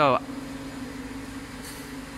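Steady hum of running water-treatment plant machinery, electric motors and pumps, with a constant low tone.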